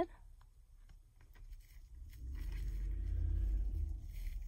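A low rumble that swells in about halfway through and holds until near the end, over faint clicks and rustles of ribbon and pins being handled.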